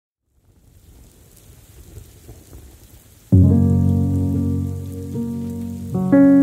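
A soft rain-like hiss fades in, then a low piano chord is struck about halfway through and left to ring, with a second chord near the end: the opening of a music track.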